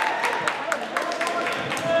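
Basketball game in a gymnasium: a background of crowd and player voices with repeated sharp knocks, several a second, of a basketball bouncing and feet on the hardwood court, echoing in the hall.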